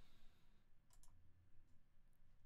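Near silence with a pair of faint computer clicks about a second in, over a faint low room hum.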